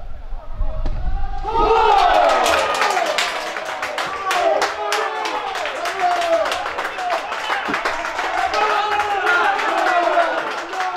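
Spectators and players cheering and shouting, with clapping, breaking out about a second and a half in and carrying on loudly: the celebration of a penalty kick that has just been scored.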